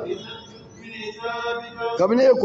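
A man's voice chanting: a phrase falls away at the start, then after a short dip a single long note is held steady.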